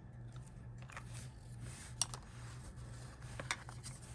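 Faint handling of paper and a liquid glue bottle: the bottle's tip rubbing glue along a small cardstock tag, with a couple of light clicks, over a steady low hum.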